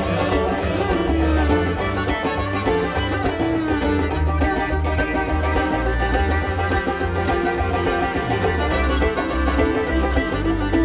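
Live band playing an instrumental passage: fiddle over plucked strings, with bass and drums keeping a steady beat.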